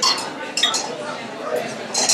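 A few light glassy clinks, like glasses or bottles knocked together, over a murmur of voices in a bar.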